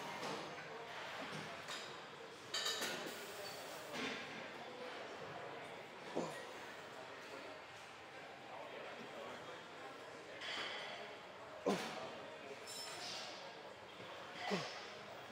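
Busy gym ambience: indistinct background voices with scattered metallic clinks and knocks of weights and machines, one sharper clank near the end.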